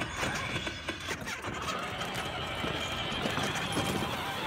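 A child's battery-powered ride-on toy car driving over brick paving, its hard plastic wheels rattling and clattering with many quick irregular clicks.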